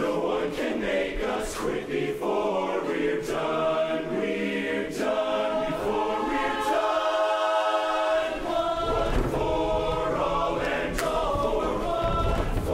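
Large men's barbershop chorus singing a cappella in close harmony. About seven seconds in, the upper voices hold a steady chord without the basses, who then come back in underneath.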